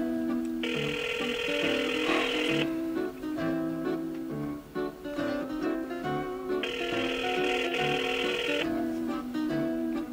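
Telephone ringback tone heard through a flip phone's speaker: two rings of about two seconds each, about four seconds apart, meaning the call is ringing unanswered. Guitar music plays underneath throughout.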